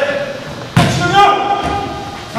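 A volleyball hit once with a sharp thud about three-quarters of a second in, during a game of foot volleyball, with players' voices calling out around it.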